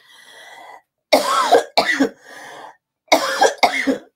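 A woman coughing: four short coughs in two pairs, the first pair about a second in and the second near the end, with breathing between.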